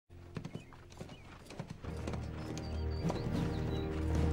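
A horse galloping closer, its hoofbeats getting louder, while orchestral film score with low held notes swells in from about two seconds in.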